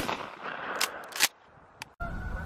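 The fading echo of a shotgun blast fired a moment before, then two sharp clicks about a second in, before the sound cuts off.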